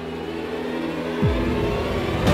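Dramatic TV-serial background score: sustained synthesizer tones, then about a second in a quick falling whoosh that drops into a deep rumble.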